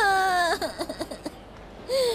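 A woman crying aloud: one long, high wail that breaks off after about half a second into a few short, shaky sobs.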